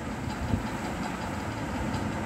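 Steady low background rumble with no clear rhythm or pitch.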